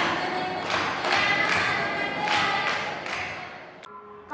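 Group of girls' voices singing with regular hand-claps, the accompaniment of a traditional Kerala group dance; it fades out near the end.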